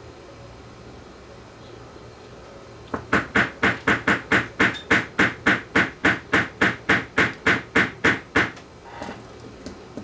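A quick, even run of about twenty light metallic taps, roughly four a second for about five seconds, starting about three seconds in: a screwdriver tapping a heat-expanded brass pulley down onto the steel shaft of a small replacement cassette-deck motor.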